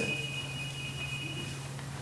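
Electronic alert tone from a phone going off in the audience: a steady high beep of two close pitches that cuts off shortly before the end, over a low steady electrical hum.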